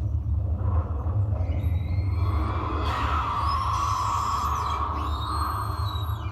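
Animatronic Tyrannosaurus rex's recorded roar played through the exhibit's speakers over a steady low rumble. The roar swells about two seconds in and is held, long and drawn out, to the end.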